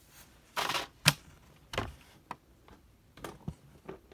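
Small plastic toy figurines handled on a cardboard surface: a few scattered taps and short rustles, with no steady sound between them.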